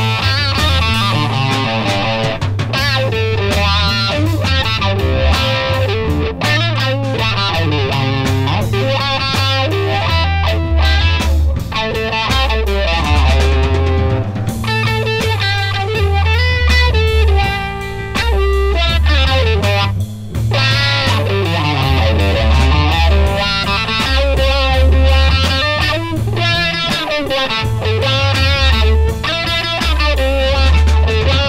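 Instrumental 1970s heavy rock: loud, fuzzy, wah-wah electric guitar lines over bass guitar, with a steady beat.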